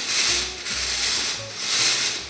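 A hand-turned circular knitting machine's 3D-printed plastic cam ring rubbing against the cylinder as the latch needles ride up and down in their slots: a scraping, sanding-like rub that swells three times as the ring is pushed round.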